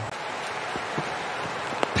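Steady stadium crowd noise, then near the end a single sharp knock as a cricket bat meets the ball in a defensive block.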